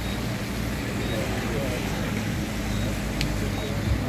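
A motor vehicle engine idling steadily, with indistinct voices talking in the background.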